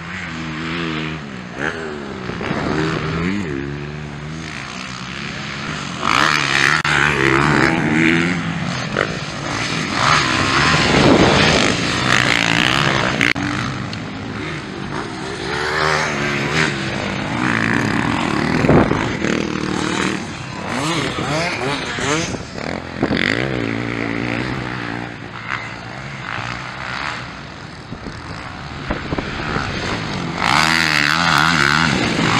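Several motocross bikes racing on a dirt track, their engines revving up and down through the gears as they pass, louder for several seconds in the middle.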